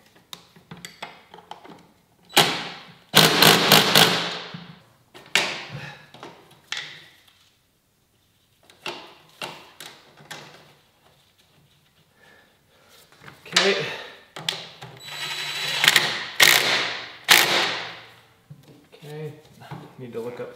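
Hand tools at work on a scooter: quick runs of clicking like a socket ratchet, with metal knocks and clatter, in two main spells about two to five seconds in and again from about thirteen to eighteen seconds, with scattered single clicks between.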